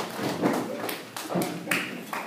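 Audience applause dying away, thinning to a few scattered claps.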